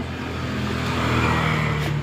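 Engine noise of a passing motor vehicle, growing gradually louder.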